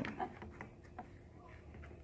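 A few faint small clicks as fingers work a rubber stopper out of an electric skateboard's charge port, over quiet room tone.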